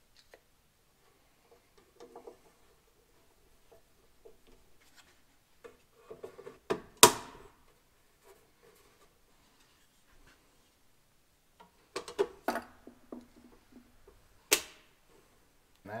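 Plastic side mirror of a van being handled and pressed into its mount, with scattered light rattling and two sharp plastic snaps, one about seven seconds in and a louder-sounding one near the end.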